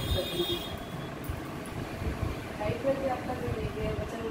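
Steady low background rumble of the kind traffic makes, with faint, indistinct voices wavering through it.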